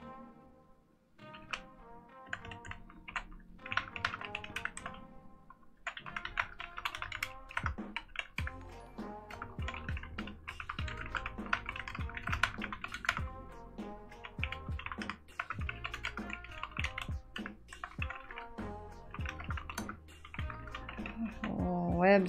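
Fast typing on a mechanical keyboard, a steady run of key clacks that starts about a second in, over background music.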